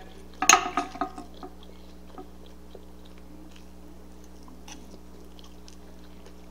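A person chewing a mouthful of food, with faint scattered mouth clicks over a low steady hum. A short vocal sound comes about half a second in.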